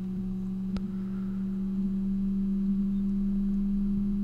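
A steady low electrical hum with a fainter higher tone above it, and one short click about three-quarters of a second in.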